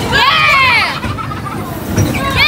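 A high-pitched shriek from a rider, falling in pitch and lasting about a second, over the steady low rumble of bumper cars running on the rink.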